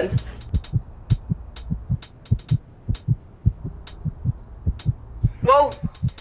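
Heartbeat sound effect: quick, even lub-dub thumps over a faint low hum, standing for a racing pulse.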